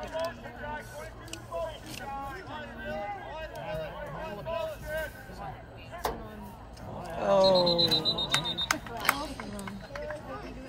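Scattered voices of players and spectators, with a louder shout about seven seconds in. Over the shout, a referee's whistle is blown once as a steady, high, slightly trilling tone for about a second and a half.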